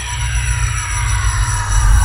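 Electronic logo intro sting: a deep rumble swelling louder under a cluster of high tones gliding slowly downward, with a few steady high tones held above.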